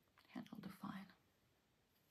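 A woman's voice making a short, soft two-part utterance, too quiet to be taken down as words, in otherwise near silence.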